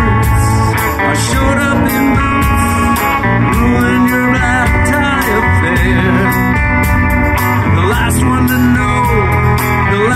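Live rock band playing amplified electric guitar, bass guitar and drums, with bending guitar lines over a steady drum beat.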